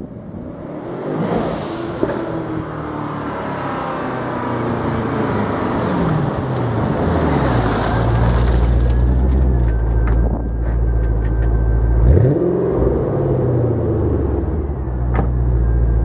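A custom twin-turbocharged LS2 V8 in a 2005 Pontiac GTO approaches with its engine note falling as it slows, then runs at a deep, low-revving rumble close by. It gives one quick throttle blip about twelve seconds in.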